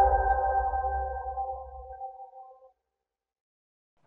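The tail of an intro music sting: a held synthesized chord over a low bass drone, fading away. The bass stops about two seconds in and the chord dies out soon after, leaving silence.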